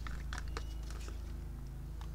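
A few faint, light clicks from a plastic paint cup and stir stick being handled, over a steady low background hum.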